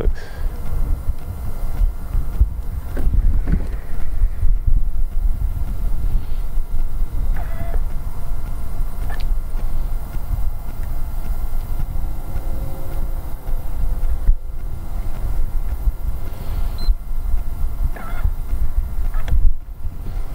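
Low, irregular rumble of wind buffeting the camera's microphone on an open boat, rising and falling in gusts, with a few faint short chirps now and then.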